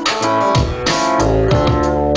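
Loud live electronic dance beat played through a concert PA: regular drum hits over a bass line and held synthesizer keyboard chords.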